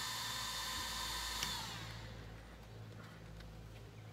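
A small electric motor, blower-like, running with a steady whir and a high whine. A click comes a little over a second in, and the whir winds down and stops; a low hum remains.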